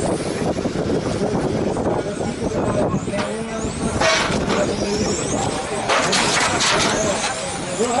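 Electric motors of 1/10-scale touring cars with 21.5-turn brushless motors whining as they accelerate and brake around the track, several high pitches rising and falling and overlapping. People talk underneath throughout.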